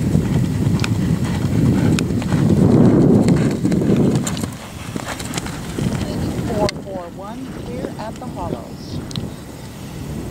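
A horse galloping on turf, its hoofbeats louder in the first few seconds and fading as it moves away.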